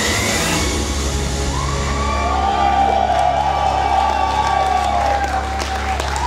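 Live concert music with a sustained low note, as the audience starts cheering with long whoops over it and scattered clapping begins about halfway through.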